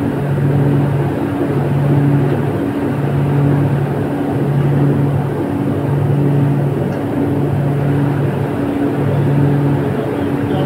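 Jeans-factory pressing machinery running: a loud steady mechanical noise with a low hum that pulses on and off at an even pace, a little slower than once a second.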